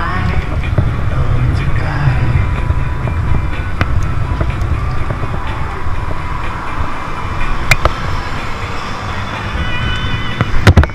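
Low, steady wind rumble on the microphone of a camera riding on a moving bicycle, with music playing over it and road traffic in the background.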